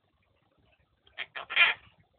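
A pet parrot gives a short, voice-like call in about three quick parts, a little over a second in.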